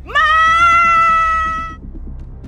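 A woman shouting "Ma!" in one long, loud, high-pitched call that rises sharply at the start and is held for about a second and a half.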